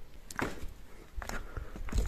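A few soft knocks and shuffling footsteps, about half a second, a second and near two seconds in, as someone walks out through a doorway.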